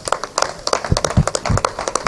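Applause: a group of people clapping their hands, with the separate claps heard distinctly and unevenly rather than as a dense roar.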